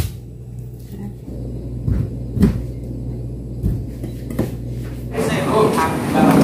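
Kitchen knife cutting through raw sweet potatoes on a plastic cutting board: a handful of irregular knocks as the blade hits the board, over a low steady hum. Near the end it gives way to busier background sound with a voice.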